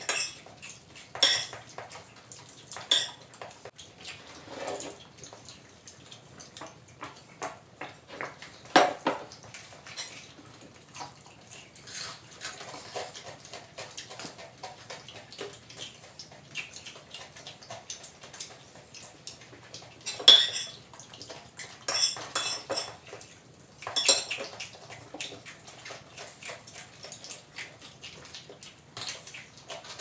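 Close-up eating sounds: fried chicken being bitten and chewed, with crunching and crackling and scattered clicks and clinks of cutlery on plates. Short sharp sounds come every second or so, the loudest about nine and twenty seconds in.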